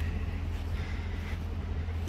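A steady low rumble with a faint hiss over it.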